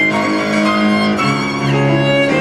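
Live tango played on violin and grand piano: the violin holds sustained, singing notes over the piano accompaniment, the harmony moving to a lower note about a second in.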